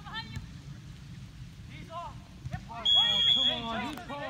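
A referee's whistle blown once, a short steady high blast about three seconds in, the loudest sound here, over people talking.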